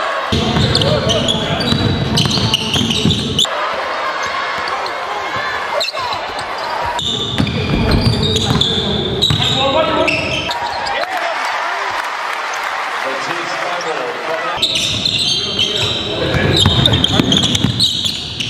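Basketball game sound in a gym: a ball bouncing on the court amid voices. The mix changes abruptly every few seconds.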